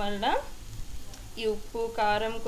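Tomato rice sizzling in a hot pan, a faint even hiss that is plainest in the pause about half a second in.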